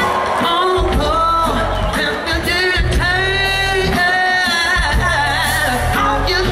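Live band playing: a male lead vocal sings long held, wavering notes over acoustic guitar, bass and drums, heard through the PA from within the crowd.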